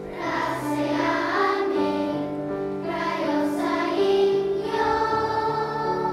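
Large children's choir singing a song, with held notes that change pitch every half second or so.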